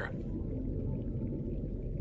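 A low, steady ambient drone from the soundtrack under reef footage, with no clear tune or distinct events.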